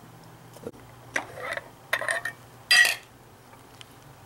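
A metal screw-top lid being twisted off a small glass jar of water: a few short scraping clicks of the lid's thread against the glass, the loudest near three seconds in.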